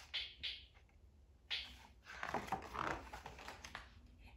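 Picture-book pages being turned by hand: a few short paper rustles near the start and about a second and a half in, then a longer rustling stretch as the page is smoothed open.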